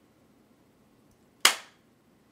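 A single sharp, loud gunshot-like bang about a second and a half in, dying away within half a second, over faint room hiss.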